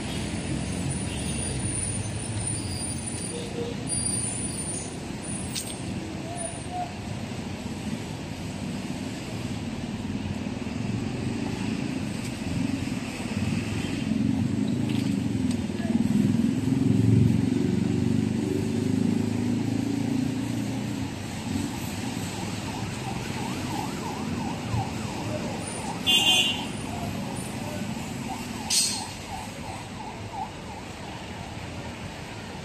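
City street traffic running steadily, loudest a little past the middle as a vehicle goes by. Two brief high-pitched sounds near the end.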